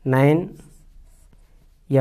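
Marker pen writing on a whiteboard, faint short strokes between two short spoken syllables from a man's voice, one loud at the start and one starting near the end.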